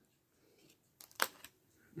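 Quiet handling noise of small packaged items and paper: a faint tick about a second in, then one short, sharp crinkle-like click and a softer tick just after.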